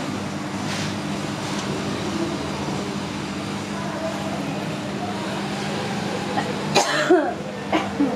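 A few coughs near the end, over a steady low hum and a faint murmur of voices in the room.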